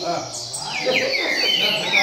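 Caged coleiros (double-collared seedeaters) singing: quick runs of short, falling whistled notes, with men talking underneath.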